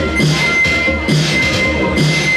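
Live electronic dance music over a sound system: a steady repeating beat with pulsing bass and a high synth tone held throughout.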